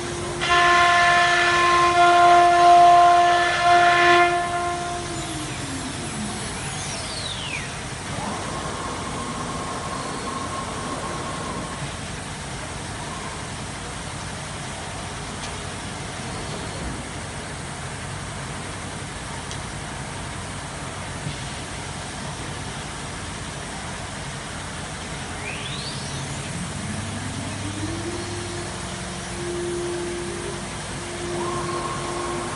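CNC wood router spindle cutting into board with a loud, high whine for about four seconds, then winding down in a falling pitch. After a long stretch of steady workshop hum, the spindle spins up again with a rising whine near the end.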